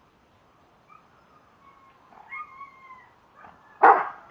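Husky-type dog vocalizing on the "speak" command: thin, high whining calls that glide in pitch from about a second in, then one loud, short bark just before the end.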